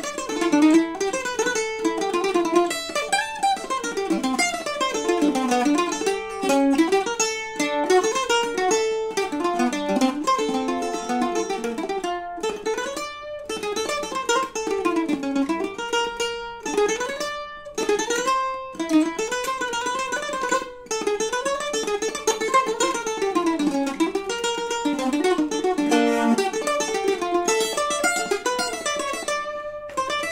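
A solo melody picked on a pear-shaped, steel-strung, double-course plucked string instrument in the mandolin family. It moves in quick running notes, with a few brief pauses between phrases.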